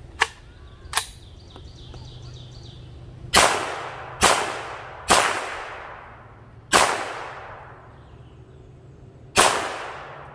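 Gunshots: two short, sharp cracks in the first second, then five louder shots spaced irregularly, the last about nine seconds in. Each of the louder shots has a long echo trailing off.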